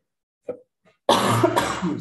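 A man coughing, a rough burst starting about a second in and lasting about a second.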